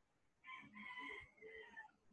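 A faint animal call starting about half a second in: one held pitched note lasting about a second and a half that dips slightly in pitch near the end.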